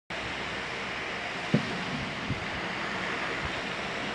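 Steady wind noise on the microphone, with a few low thumps, the loudest about one and a half seconds in.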